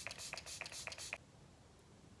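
Pump-spray mister of a GlamGlow setting spray bottle, pressed several times in quick succession to wet a makeup brush: a rapid run of short, faint hissing sprays over about the first second.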